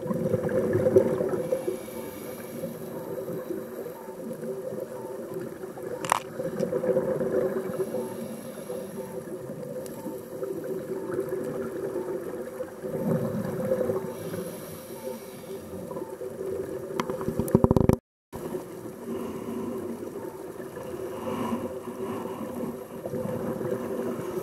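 Underwater ambience picked up by a camera in its housing: a steady low drone with louder rushes of noise near the start and about thirteen seconds in, and a brief break about eighteen seconds in.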